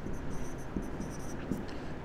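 Marker pen writing on a whiteboard: a run of short, quiet, high-pitched strokes as a word is written.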